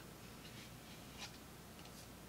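Faint rustling and scraping of a card sleeve as a CD is slid out of it, with a brief sharper scrape a little past a second in.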